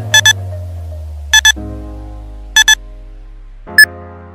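Electronic countdown-timer beeps over background music: three short double beeps about a second apart, then a single beep of a different pitch near the end, marking the end of the exercise interval.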